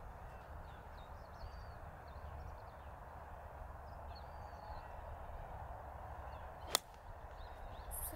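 A 58-degree wedge striking a golf ball on an approach swing: one sharp click a little under seven seconds in. Under it, steady faint outdoor background noise with small bird chirps.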